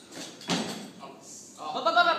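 A sharp thud about half a second in as the barbell is caught in the clean, then a loud drawn-out yell near the end as the lifter sits in the front squat.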